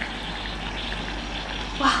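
Self-heating hot pot steaming and simmering as its lid is lifted, a steady hiss from the heat pack and bubbling broth.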